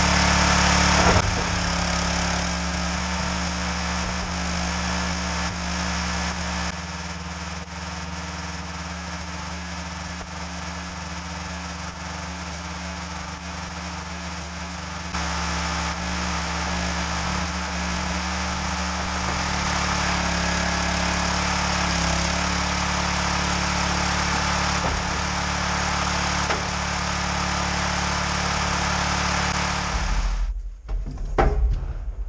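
Small petrol engine of a log splitter running steadily throughout. Its level drops a little about a second in and again near seven seconds, then picks up around fifteen seconds.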